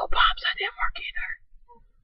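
A man whispering rapidly, the words unclear, trailing off about a second and a half in.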